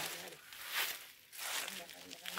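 A short rustle of dry leaves and garden foliage being brushed or stepped through, between brief bits of a voice.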